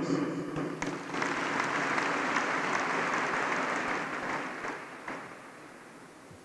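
Audience applauding, building about a second in, holding steady, then dying away over the last two seconds.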